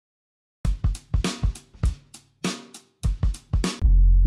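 Drum-kit loops from a music app's sound library auditioned one after another: a groove of kick, snare and hi-hat starts about half a second in. It stops briefly just before three seconds in, and another groove begins.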